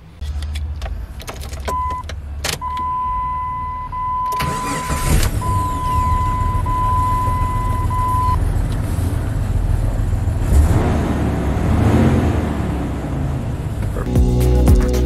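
Jeep's ignition key clicking as it is turned, with a steady electronic warning tone from the dash, then the engine cranking about four seconds in, catching and running steadily. The engine starts and runs with the SKIM module removed and a SKIM-deleted PCM fitted.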